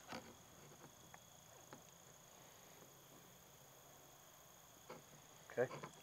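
Near silence, with a few faint small clicks as hands knot a bungee cord and handle a plastic rod-holder tube.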